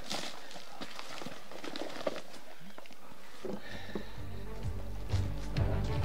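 Footsteps on a gravel track, a scatter of light irregular steps. About halfway through, music comes in and builds louder.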